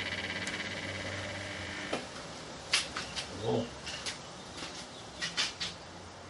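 Low transformer hum from the 2 kV microwave-oven-transformer supply, with a fading high whine, as it drives a CFL ballast whose capacitor has just blown. About two seconds in, a click and the hum stops, and the current falls to zero. A few scattered sharp clicks follow.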